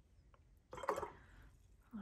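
Quiet room tone broken by a brief, untranscribed vocal sound from the painter just under a second in.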